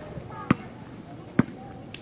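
A basketball bouncing on an outdoor hard court: two dribbles about a second apart, then a lighter, sharper tap near the end.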